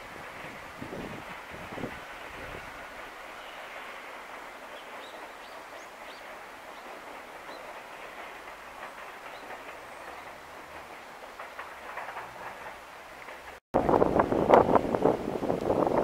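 Distant freight train of container wagons running past on the track, a steady rumble and clatter of wheels on rail. Near the end it switches suddenly to loud wind buffeting the microphone.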